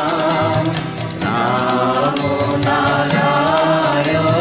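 Bengali devotional nam sankirtan music: chanting of the divine name with accompaniment. A brief dip comes about a second in, then a new phrase begins.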